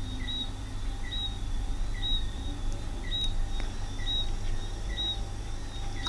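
A faint short two-note high chirp, repeating about once a second, over a steady low hum.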